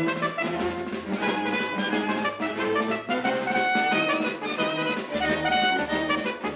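Orchestral cartoon underscore led by brass, a busy run of short, quickly changing notes.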